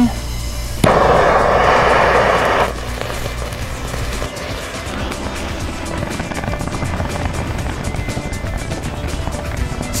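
Thermite igniting and burning with a loud, steady hiss that starts suddenly about a second in and cuts off about two seconds later, over background music.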